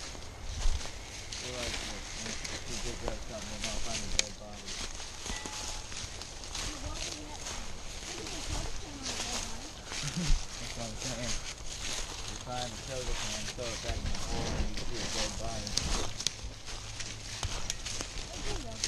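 Footsteps crunching through dry leaf litter as several people walk, in an irregular run of crackles and scuffs, with faint low talk now and then.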